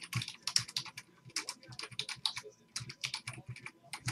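Typing on a computer keyboard: a quick, irregular run of keystroke clicks as a short list of words is typed.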